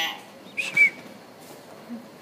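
Caged hill myna making two short calls: a harsh, buzzy note at the start, then a brief curving whistle just under a second in.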